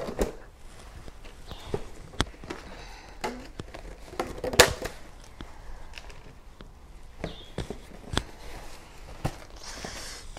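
A cardboard shoe box being opened and handled: scattered knocks, taps and scrapes, with one louder knock about halfway through.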